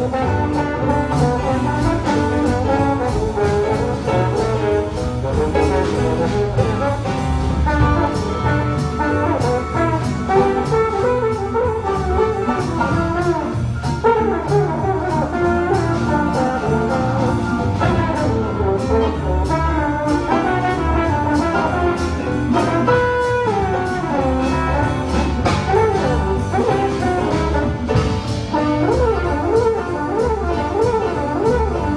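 Jazz trombone solo over a big band's rhythm section of piano, upright bass and drum kit: a single brass line of quickly changing notes, with the swing accompaniment running underneath.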